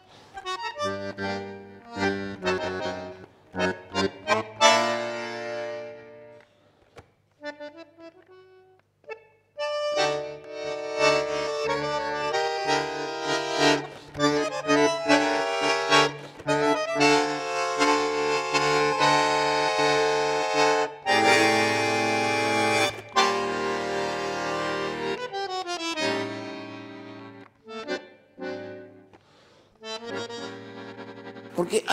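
Solo bandoneon playing tango in chords, with a sparse, quieter passage about a quarter of the way in, then fuller sustained chords through the middle that thin out near the end.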